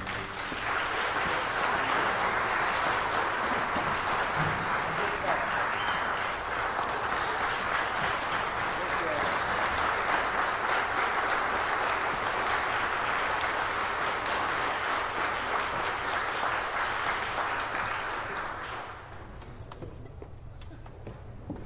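Audience applauding at the end of a piece, a dense steady clapping that dies away near the end.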